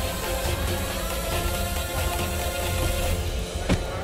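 Dramatic background music of held, sustained tones over a low drone, with a sharp percussive hit near the end.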